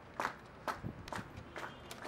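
Footsteps, about two steps a second.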